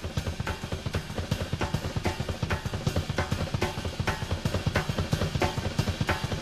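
Drum kit with Zildjian cymbals played live at a fast tempo: a dense run of bass drum strokes under sharp snare accents several times a second, with cymbals ringing over the top.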